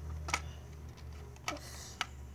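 Two light clicks of plastic LEGO pieces being handled, one about a third of a second in and one about a second and a half in, the second followed by a brief rustle, over a steady low hum.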